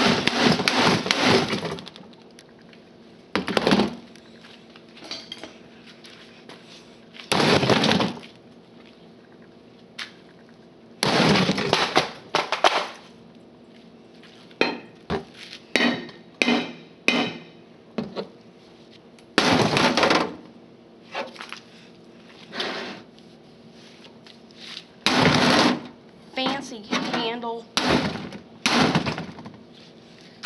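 A sledgehammer striking the plastic cabinet of a Pelco CRT monitor, about a dozen loud blows at irregular intervals, some in quick runs, with clattering after several of them.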